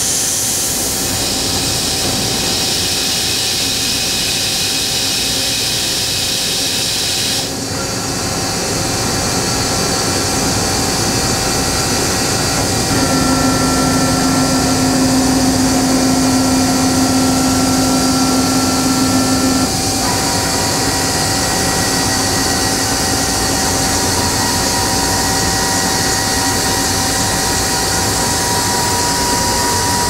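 Agie Agietron Advance 3 CNC EDM running under power as its DC servo-driven axes move the head toward the tool changer: a steady machine hum and hiss with whining tones that change about a quarter of the way in, again near the middle where a stronger whine sets in, and again about two-thirds through.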